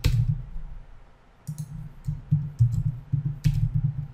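Computer keyboard typing: after a brief lull, runs of quick keystrokes start about one and a half seconds in and go on to the end.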